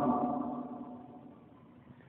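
A man's amplified voice ringing on after he stops speaking, as steady tones that fade away over about a second and a half into near silence: the echo of his voice through the microphone and loudspeakers.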